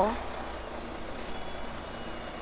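A city bus's diesel engine running as the bus drives slowly past close by, a steady hum with road and engine noise.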